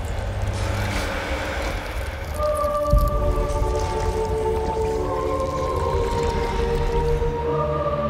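Dramatic film-trailer score. A dense wash of sound effects gives way about two and a half seconds in to long held tones, layered one over another, with a deep hit about three seconds in.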